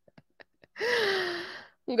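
A few faint clicks, then about three-quarters of a second in a woman gives a breathy voiced sigh or gasp lasting about a second, its pitch falling gently.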